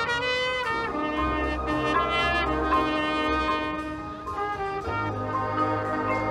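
Marching band playing, with a trumpet loud and close to the microphone over low brass notes. The notes are held and change every second or so.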